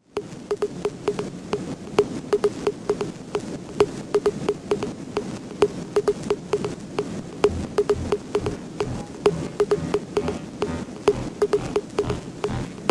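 An uneven run of sharp clicks, several a second, each with a short ring, over a steady background noise, with a few dull low thuds in the second half.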